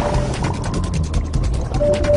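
Cartoon sound effect of a small submarine's motor running: a rapid mechanical clicking, about ten clicks a second, over a low rumble.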